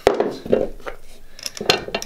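Light metallic clinks and knocks as a scooter wheel and its steel bearings are handled and set down on the base of an arbor press, with a few separate knocks and a sharper one near the end.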